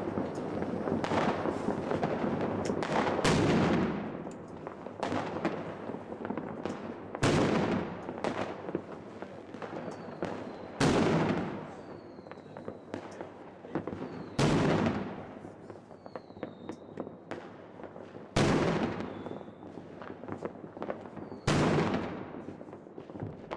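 Fireworks going off. A dense crackle fills the first few seconds, then six loud bangs come about every three and a half to four seconds, each dying away, with smaller pops and crackles between them and a few faint short whistles.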